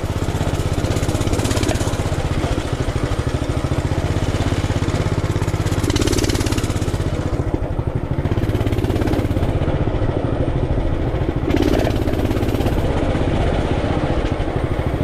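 Small off-road engine running steadily as the machine rides along a dirt trail, its low firing pulses continuous, with wind rush on the microphone rising and falling.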